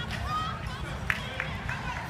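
Crowd chatter in a large gym hall: scattered distant voices over a steady low rumble, with one sharp knock about a second in.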